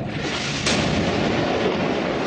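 Weapons fire in combat: a loud, dense noise that starts suddenly, with a sharp crack about two-thirds of a second in.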